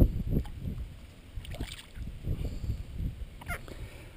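Water sloshing and swirling against a boat hull as a landing net is worked through matted grass to scoop up a largemouth bass, with uneven low rumbling that eases after the first moment.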